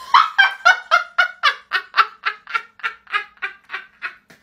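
A woman laughing hard: a long, rhythmic run of high 'ha' pulses, about four a second, slowly fading toward the end.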